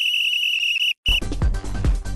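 Opening of a sports-bulletin theme: a long, shrill whistle note of about a second, cut off, then a short second whistle blast. Music with a heavy beat and deep bass starts right after.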